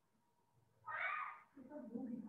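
A man's voice in a lecture pause: one short drawn-out hesitation sound about a second in, after near silence, with fainter voicing near the end.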